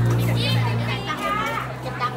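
Several high-pitched voices talking and calling over one another, over a steady low hum.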